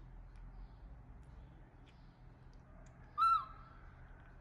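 Baby macaque giving one short, high, tonal coo about three seconds in, rising then falling in pitch, with a faint held tone trailing after it.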